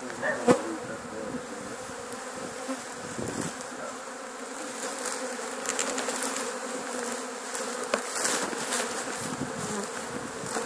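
A swarm of honeybees buzzing steadily around a cardboard box set on a hive as the swarm is being hived. A sharp knock about half a second in and a few lighter clicks later.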